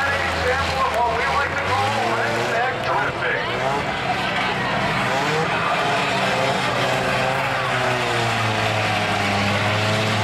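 A race car engine running steadily at low revs, with the chatter of a crowd of spectators over it.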